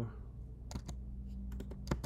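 Computer keyboard keystrokes while typing code: a couple of clicks about halfway through, then a quicker run of keystrokes near the end.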